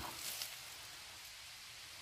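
Quiet outdoor background hiss in woodland, with a few faint crackles in the first half-second.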